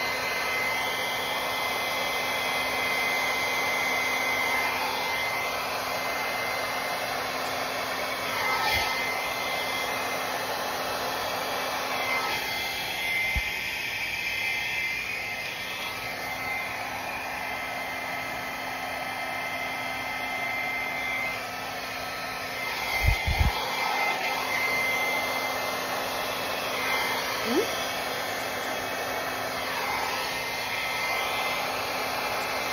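Hair dryer running steadily with a high whine, blowing wet acrylic pour paint across a canvas to open it into a bloom. Its pitch dips briefly a few times, and a couple of low knocks come about three quarters of the way through.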